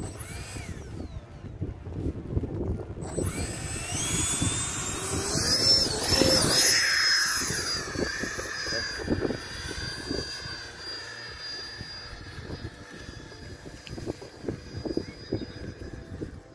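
Electric ducted-fan motor of an RC jet spooling up for takeoff, a high whine rising in pitch and growing loudest about six seconds in as the plane lifts off and passes. It then settles into a steadier, fainter whine that slowly falls in pitch as the jet climbs away.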